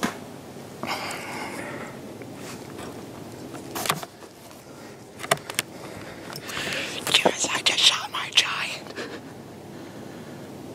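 A man whispering under his breath, with several sharp clicks and rustles from the camera and his clothing being handled. A dense run of hissy whispering and clicks comes in the second half.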